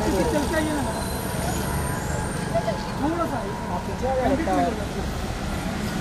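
Steady street traffic, a low rumble of passing cars and auto-rickshaws, with scattered voices of people talking in the background.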